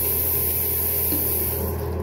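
A steady hissing noise with a low hum beneath it; the hiss cuts off near the end.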